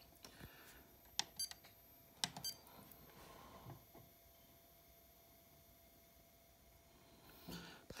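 Two short electronic beeps from an iCharger 4010 Duo hobby charger as its status buttons are pressed, the first about a second and a half in and the second a second later, each preceded by a soft button click. Otherwise faint, steady room tone.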